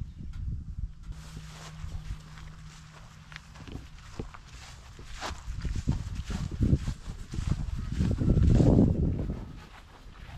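Footsteps on grass and handling knocks from a handheld camera being carried around, irregular low thumps, with a louder low rumble for about a second near the end.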